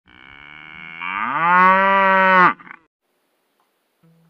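A cow mooing: one long call that starts quiet, grows louder and rises in pitch about a second in, then cuts off sharply about two and a half seconds in.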